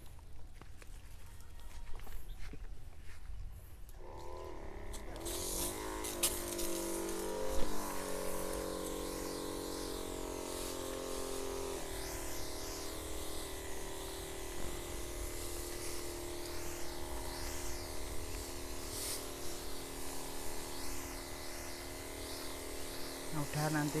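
Electric knapsack sprayer's pump motor starting about four seconds in with a whine that wavers, then settles into a steady hum under the hiss of the spray, with one brief knock a few seconds after it starts.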